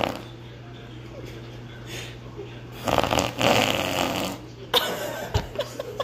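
A long, raspy, fluttering fart of about a second and a half, about three seconds in, followed by a shorter one just before five seconds.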